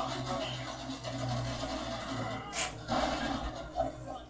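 Soundtrack of a Portuguese-dubbed animated episode playing quietly: voices with background music, and a brief sharp noise about two and a half seconds in.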